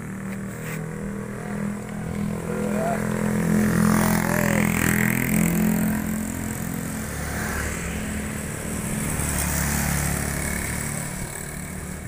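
Engine of a moving vehicle running steadily along a road, getting louder between about two and six seconds in as other motor scooters go by.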